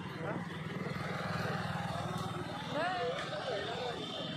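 A motorcycle engine idling steadily, with men's voices talking over it near the end.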